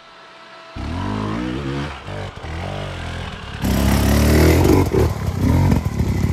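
Enduro motorcycle engine revving unevenly on a steep, muddy hill climb, its pitch rising and falling with the throttle; it starts about a second in. About halfway through it turns abruptly louder and harsher, with clatter and rushing noise over the engine.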